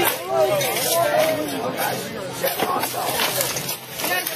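Several people talking at once in indistinct chatter.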